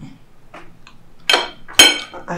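Forks tapping and scraping on dinner plates as two people eat, with light ticks at first and then two sharp clinks in the second half.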